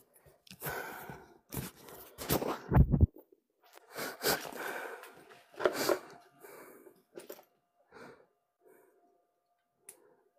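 Rustling, scraping and knocking of a phone's clip-on microphone being handled as its furry windshield is pulled off and the mount changed, with a heavy thump about three seconds in and smaller clicks after it.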